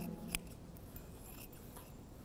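Scissors snipping muslin fabric faintly, with one sharper click about a third of a second in.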